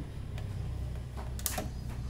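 Two-pole miniature circuit breaker (MCB) being switched on: one sharp click about one and a half seconds in, with a fainter click earlier, over a low steady hum.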